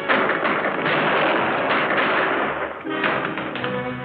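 Dramatic film score under a dense clatter of noise and knocks for about the first three seconds, after which the music comes through clearly with held notes.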